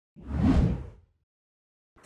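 A single whoosh transition sound effect that swells up and fades away within about a second.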